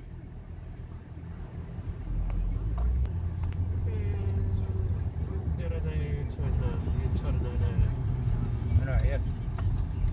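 Car cabin noise: a low engine and road rumble that grows louder about two seconds in as the car pulls away and drives on.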